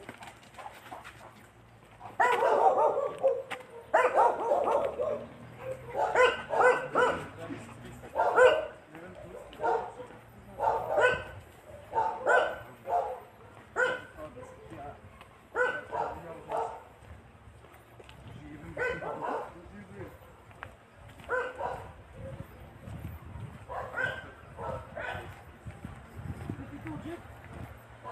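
A dog barking over and over, single barks or short runs of barks every second or two, loudest in the first half.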